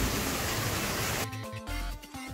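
Steady splashing of a thin stream of water falling into a shallow pond. A little past halfway it cuts suddenly to electronic music with a steady beat.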